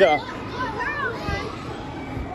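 Children playing, with high child voices calling out over a steady background din. A man's voice is heard briefly at the start.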